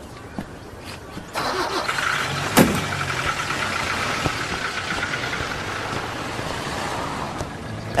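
An old car's engine starts and runs steadily as the car pulls away. A car door shuts with a sharp thud about two and a half seconds in.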